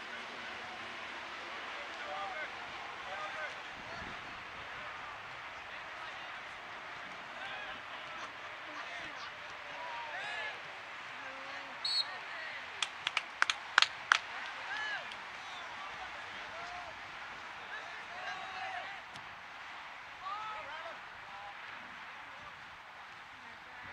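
Soccer-match sound from across the field: scattered distant shouts and calls from players and spectators over a steady hiss. A little past halfway comes a brief sharp sound, then a quick run of about six sharp hand claps.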